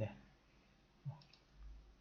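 A few faint computer-mouse clicks about a second in, over quiet room tone.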